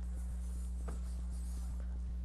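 Room tone in a pause: a steady low electrical hum from the microphone and sound system, with faint, rapid, even ticking and a soft click about a second in.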